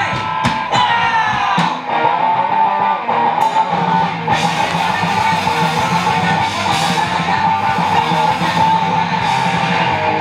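Live rock band playing loudly, with electric guitars, bass and a drum kit. Separate drum hits stand out over the guitar in the first few seconds, then the full band thickens about four seconds in, with cymbals washing over the top.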